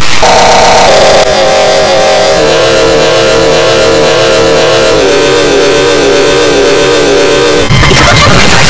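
Loud, harshly distorted electronic tone that steps down in pitch several times under a dense hiss: cartoon audio run through heavy pitch and distortion effects.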